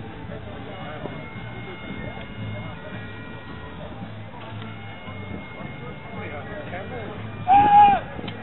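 Low crowd murmur, then near the end a single loud male shout about half a second long: the thrower's yell as he releases the 28 lb weight.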